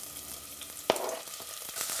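Sliced onion sizzling quietly in hot oil in a small saucepan, with one sharp knock a little under a second in.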